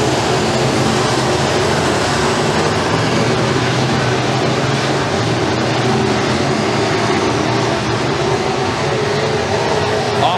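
A pack of RUSH Pro Mod dirt-track race cars running at racing speed around the oval, their engines sounding together, loud and steady.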